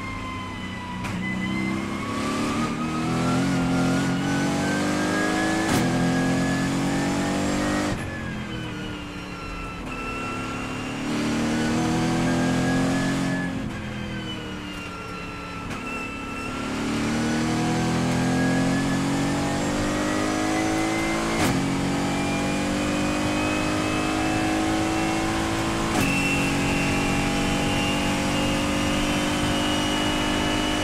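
Race car engine heard from inside the cockpit, accelerating hard through the gears: its pitch climbs and snaps down at upshifts about six, twenty-one and twenty-six seconds in. It eases off twice for corners before a long full-throttle run.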